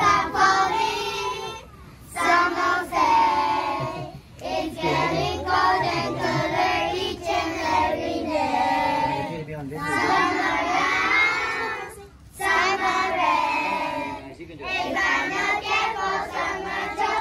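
A group of young children singing a song together, in phrases broken by short pauses for breath.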